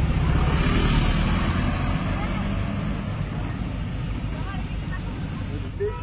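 Low, steady rumble of a vehicle's engine and road noise heard from inside the vehicle, loudest in the first second or so, with faint voices of people outside.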